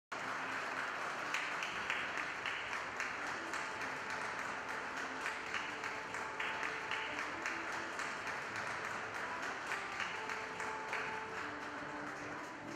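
An audience applauding steadily with dense, even clapping, a few faint held musical notes sounding underneath.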